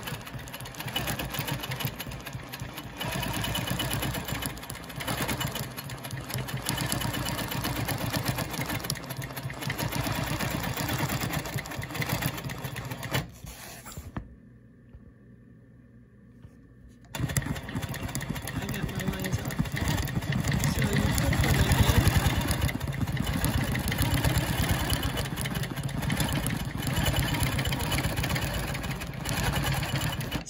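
Longarm quilting machine stitching rapidly while doing ruler work. It stops for about three seconds midway, then starts stitching again.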